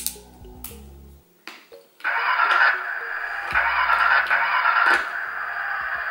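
Plastic play elements on a baby walker's toy panel click a few times as they are moved. About two seconds in, a loud electronic tune starts from the panel's battery-powered music unit and plays on.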